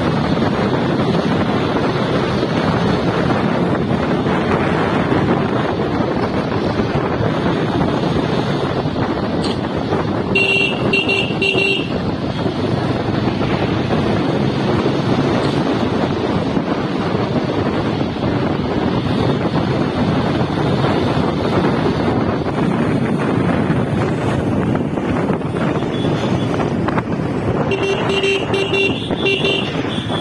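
Riding noise from a motorcycle at road speed: the engine running under a steady rush of wind on the microphone. Twice a vehicle horn sounds a quick series of short toots, once about ten seconds in and again near the end.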